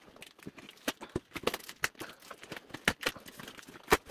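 Cardboard shipping box being handled and worked open by hand: scattered short knocks, taps and scrapes of cardboard, several a second, with a sharper knock near the end.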